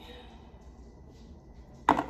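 Low room tone, then near the end a single short, sharp click from a small plastic visor clip being handled at the table.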